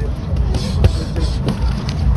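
A few sharp slaps of boxing gloves landing as two boxers exchange punches, the loudest just under a second in, over a steady low rumble.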